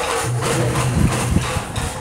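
A large singing bowl sounding a steady low hum, played with a padded mallet while held upside down over a man's head. The hum throbs and wavers about the middle.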